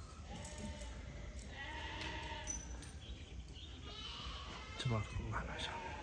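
Sheep bleating: about three drawn-out bleats, fairly faint, over low background noise.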